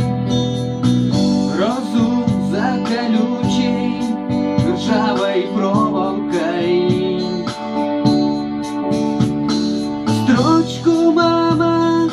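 Electronic keyboard synthesizer playing a song: a guitar-like lead voice with bending notes over held chords and a steady drum beat from the auto-accompaniment.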